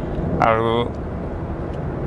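Steady low rumble of road and engine noise inside a moving car's cabin, with a short held vocal hesitation from the driver about half a second in.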